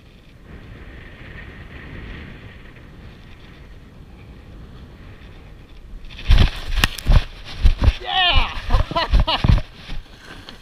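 Air rushing over the microphone during a low parachute glide. About six seconds in it gives way to a series of heavy thumps and scuffs as the jumper lands on gravel and runs out the landing, breathing hard and crying out without words.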